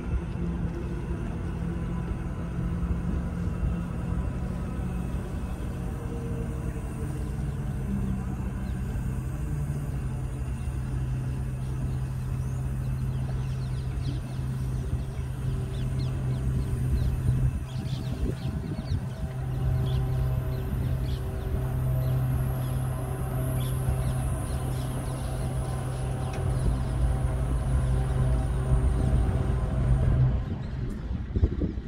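Steady low mechanical drone with a deep hum, stepping slightly in pitch about eight to ten seconds in.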